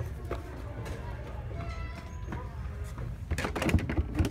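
Shop ambience: a steady low hum with faint voices in the background, then a quick cluster of clicks and knocks near the end, handling noise from the phone and the shoes being shown.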